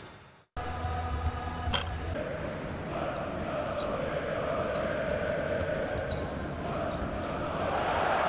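A short music sting fades and cuts off about half a second in. Then live basketball game sound: a ball bouncing on a hardwood court with sharp short clicks, over steady crowd noise that grows a little louder near the end.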